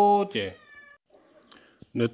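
A person's voice holding a long, steady drawn-out vowel that stops just after the start. A short syllable with a falling tail follows, then about a second of quiet before speech starts again near the end.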